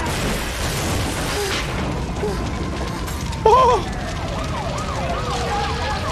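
Fire engine siren wailing, gliding down and back up in the second half, over a rushing noise in the first second or so. A single short, loud cry rings out about three and a half seconds in.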